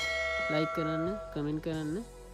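A bell chime sound effect struck once, ringing for about a second and a half before fading, under a voice.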